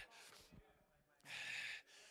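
Near silence, then about a second and a half in one short breath into a handheld microphone, brief and breathy.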